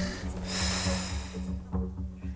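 A man's deep sigh: one long, breathy exhale, starting about half a second in and lasting about a second, over background music with a low, steady beat.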